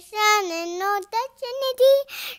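A young girl singing a Telugu children's rhyme unaccompanied: one held note for most of the first second, then a run of shorter notes.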